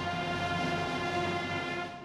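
School concert band holding a loud, sustained final chord on brass and woodwinds. The chord is cut off just before the end, leaving the stage's reverberation to fade.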